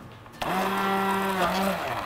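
Handheld immersion blender running in a pot of cooked fish soup, blending the vegetables and stock into a purée. A steady motor hum starts about half a second in and cuts off shortly before the end.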